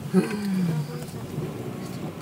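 A person's voice in one short drawn-out groan that starts abruptly and slides down in pitch, lasting under a second, over the steady low hum of a moving car's cabin.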